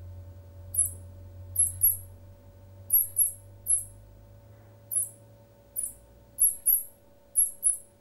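Handmade wooden mouth-blown fox call giving short, very high-pitched squeaks, mostly in quick pairs, about a dozen in all: the mouse squeak a hunter's lure uses to draw in foxes.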